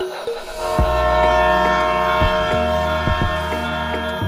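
Train horn sound: a steady chord of several tones comes in a little under a second in and holds, over background music.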